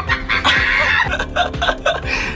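A chicken clucking in a run of short clucks, over background music.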